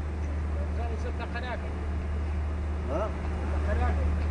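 City street ambience: a steady low hum throughout, with faint distant voices about a second in and again near the end.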